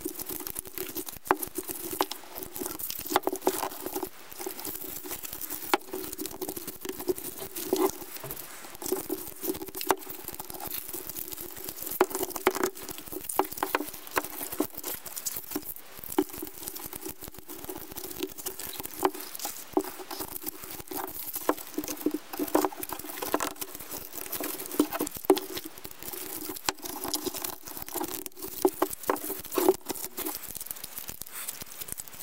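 Bristles of a flat polypropylene broom crackling and rustling under gloved hands as copper wire is threaded through them in rows to straighten the bent head, a dense run of small irregular clicks over a steady low hum.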